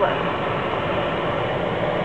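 Steady hum and hiss of a car running, heard from inside the cabin.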